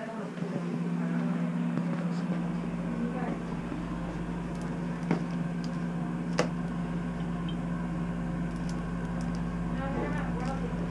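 Bathroom exhaust fan running with a steady electric hum and low rumble. Two light clicks come from items on the counter being handled, midway through.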